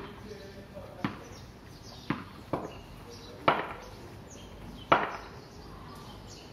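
A cricket bat tapped on a hard tiled floor: six sharp knocks at uneven intervals about a second apart, the last two the loudest.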